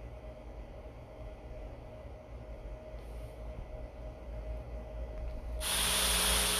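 Quiet background: a low steady hum, with a hiss that comes in suddenly near the end.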